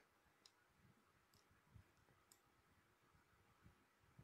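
Near silence, with three or four very faint clicks about a second apart.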